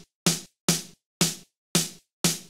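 A programmed snare drum hit repeating about twice a second, each hit sharp with a short decay. It runs through Ableton Live's Vocoder with a noise carrier, and the vocoded noise blended in is being turned up, adding a brighter, snappier high end to each hit.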